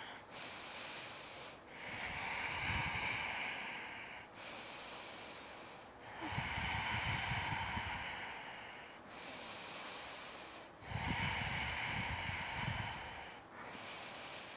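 A woman breathing slowly and audibly while holding a yoga back bend (bridge pose): a steady run of long breaths in and out, each lasting about two to three seconds, with short pauses between them.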